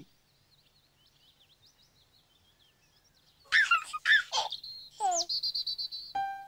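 Faint birdsong chirping. About three and a half seconds in, a baby's voice giggles and coos several times, loud and sliding in pitch, with a quick high trill near the end.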